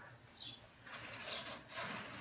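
Curry comb scrubbing over a horse's coat in short, quiet strokes, about four in two seconds.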